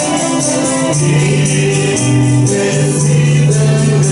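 Group of voices singing a gospel song, sustained notes moving from pitch to pitch, with a tambourine keeping a steady beat.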